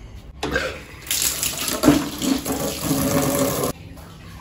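Water splashing and sloshing in a plastic bucket as a cloth is pushed into it and worked by hand to soak it for mopping the floor. It cuts off suddenly near the end.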